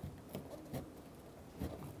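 Red plastic trim tool scraping leftover nameplate adhesive and double-sided tape off a painted truck door, in a few short, irregular strokes.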